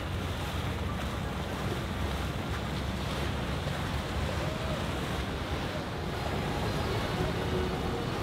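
A center-console boat with four outboard engines running past at cruising speed, its wake and hull wash hissing steadily, with wind buffeting the microphone.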